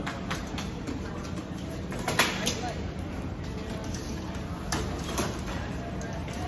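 Indistinct background voices over a steady low hum, with a few sharp clicks: one about two seconds in and two more near the end.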